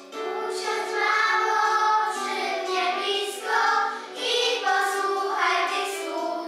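A group of young children singing a song together in unison, coming in just after the start over an instrumental accompaniment.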